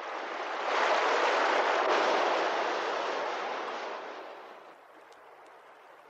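Sound effect of a waterfall: a steady rush of water that swells up within the first second and fades away four to five seconds in.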